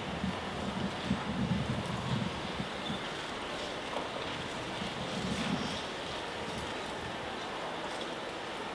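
Quiet open-air ambience with wind buffeting the microphone, in low rumbling gusts about half a second in and again around five seconds.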